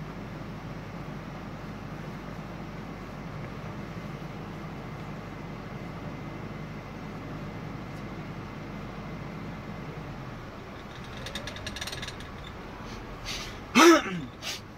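Steady engine and road noise heard inside the cabin of a car being driven slowly. There are some light clicks about eleven seconds in, and a short, loud knock just before the end.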